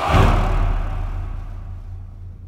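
A deep boom-like hit on a film soundtrack, sudden at the start, then fading away over about two seconds.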